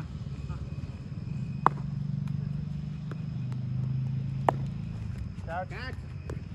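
Two sharp knocks of a cricket bat striking a ball, about three seconds apart, over a low steady hum, with a shout near the end.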